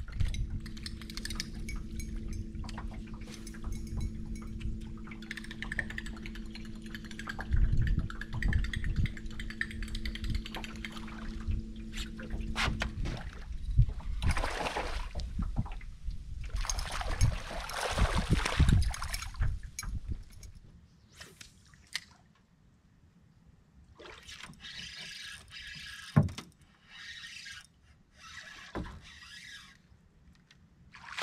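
An electric trolling motor on the bow of an aluminium jon boat runs with a steady hum and cuts off about 13 seconds in. After it come several bursts of water splashing and sloshing.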